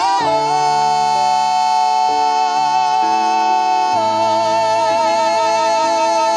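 Two male singers holding one long, high sung note in harmony with vibrato, the lower part stepping down about four seconds in, over sustained backing chords, a feat of breath control.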